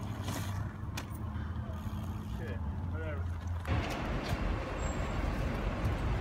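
Outdoor background noise: a steady low rumble with a few faint clicks and some short wavering chirps. About two-thirds of the way through it switches abruptly to a louder, hissier noise.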